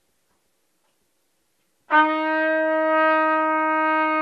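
A trumpet playing one long, steady note, starting about two seconds in, played into the microphone for an input-gain check.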